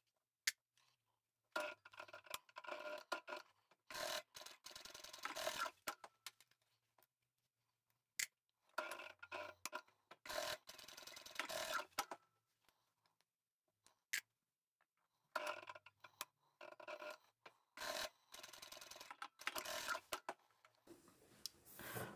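Sewing machine stitching in three short runs of about four seconds each, with quiet gaps between: the diagonal seams of three mitred corners being sewn, each begun and finished with a back stitch. Fabric rubs and rustles as the corners are moved under the foot.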